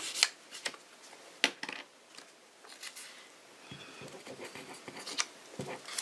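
Fingers rubbing and handling a piece of paper, with soft rubbing noise and a few sharp clicks or taps scattered through it.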